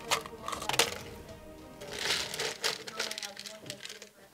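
Faint children's voices answering a question, with two light clicks in the first second.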